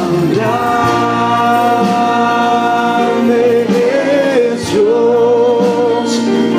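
Live Christian worship music: voices sing long held notes with vibrato over instrumental accompaniment, with occasional tambourine jingles.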